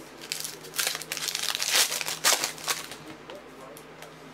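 Foil wrapper of a 2015 Panini Certified football card pack being torn open and crinkled by hand: a dense run of crackling for about three seconds that dies away near the end.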